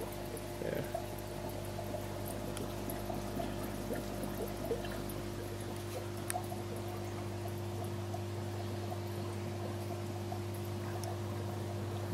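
Air-driven sponge filter in a small aquarium, its stream of fine bubbles trickling up through the water over the steady low hum of the air pump.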